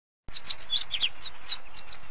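Small birds chirping: a quick run of short, high chirps, several a second, starting a moment in over a faint hiss.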